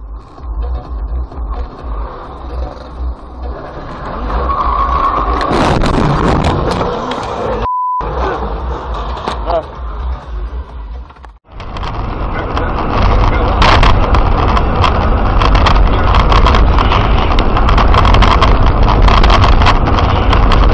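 Car engine and road noise from dashcam recordings, several clips cut together, with a short single-tone beep about eight seconds in. The last clip is the loudest, with a heavy steady low rumble.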